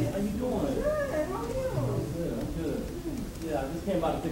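A person's voice, unclear speech or exclamations with pitch rising and falling throughout.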